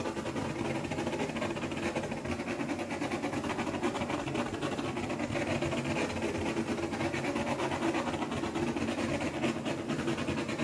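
Handheld gas torch burning steadily as it is swept over wet acrylic paint: a continuous rushing flame with a fast flutter.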